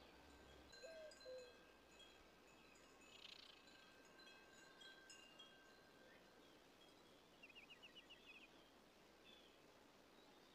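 Near silence with faint, scattered high chime-like tones, a soft chirp about a second in, and a quick run of short chirps about seven and a half seconds in.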